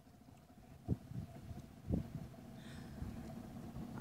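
Two dull thumps about a second apart over a faint, steady outdoor background.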